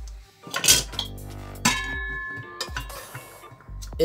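Metal spoon knocking against a metal cooking pot of cooked rice: two knocks about a second apart, the second leaving the pot ringing for about a second.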